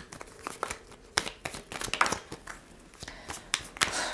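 A deck of oracle cards being shuffled overhand by hand: cards sliding and slapping against each other in an irregular run of light clicks.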